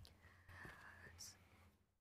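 Near silence: faint rustling of paper sheets being handled, over a low steady hum.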